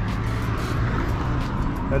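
Steady low hum of street traffic, with a car passing close by.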